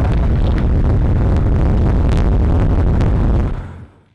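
Loud, steady low rumble with scattered sharp crackles and pops, fading out quickly near the end.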